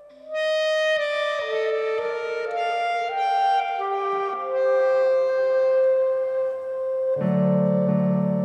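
Solo clarinet playing a melody of short stepping notes, then holding one long note. Near the end a low keyboard chord comes in underneath.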